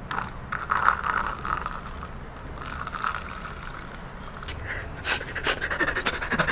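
Water poured from a plastic bottle into a clear plastic cup, a trickling splash lasting about three seconds. Near the end come several short, sharp clicks and rustles.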